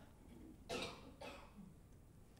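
A person's faint, short cough about two-thirds of a second in, followed by a softer second one; otherwise near silence.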